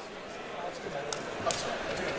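Two sharp smacks of strikes landing between MMA fighters, a little over a second in and again about half a second later, over the murmur and shouts of the crowd and corners in the hall.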